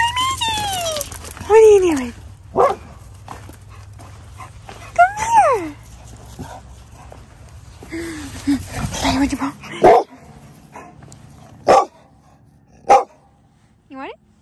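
A dog whining and barking in excitement, with high calls that drop sharply in pitch, then several short, sharp barks a second or two apart.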